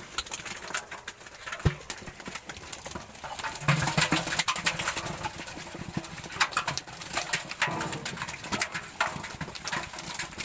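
Irregular knocks, slaps and splashes of live pangas catfish being handled in water-filled metal pots, with a couple of brief low hums in the middle.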